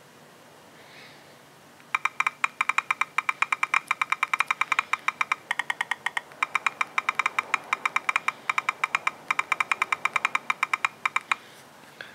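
Rapid key-press clicks from the HTC One's stock Android 4.3 Jelly Bean on-screen keyboard as a sentence is typed fast, about seven or eight clicks a second. They start about two seconds in and stop shortly before the end.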